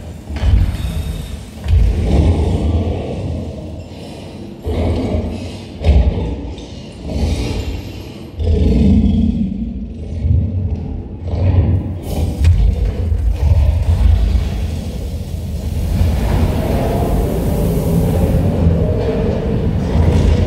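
Attraction show soundtrack over loudspeakers in a large hall: repeated heavy booms and rumbles under dramatic music, with a longer rushing sound near the end as the fire effect goes off.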